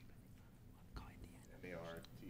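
Quiet room tone in a hearing room, with one soft low thump about halfway through and a quiet voice starting near the end.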